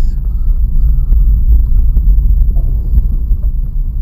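Suzuki Vitara 4x4 driving through snow in four-wheel drive, heard from inside the cabin as a loud, steady low rumble of engine and drivetrain.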